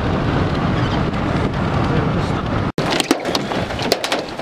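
Steady road and engine noise of a moving car. After a sudden break about three seconds in, rain takes over, with many sharp clicks of drops striking close by.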